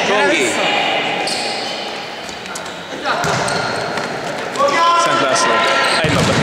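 Reverberant sports-hall din of an indoor ball game: a ball thudding on the hard court floor and players calling out, with a louder shout near the end.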